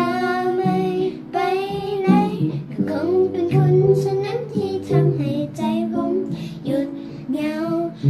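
A young girl singing a pop song in a voice lesson, with wavering sung notes over a backing accompaniment of held low notes.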